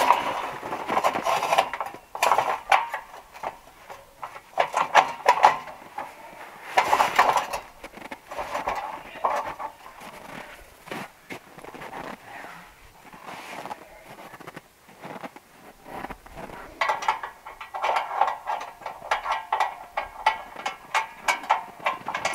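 Steel scaffold frames clanking and rattling, with repeated knocks and metallic clinks as pins are pulled and the frame is shifted and adjusted.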